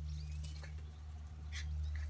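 A few light clicks of miniature schnauzer puppies' paws and claws on a concrete porch as they chase each other. Under it runs a steady low hum, with a faint bird chirp.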